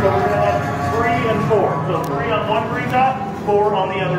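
Indistinct voices of several people talking, over a steady low hum.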